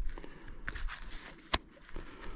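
Gloved fingers rubbing and working dirt off a small dug-up cap, a soft irregular scuffing and crumbling, with one sharp click about one and a half seconds in.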